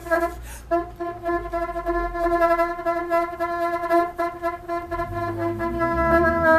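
Bassoon holding one long, steady note, broken off briefly just under a second in and then resumed. A lower, wavering sound joins near the end.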